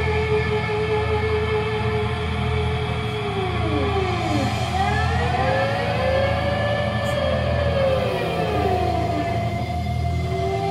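Live rock band playing a droning passage without vocals: sustained tones over a low rumble, with sliding, siren-like pitch swoops that rise and fall through the middle of it.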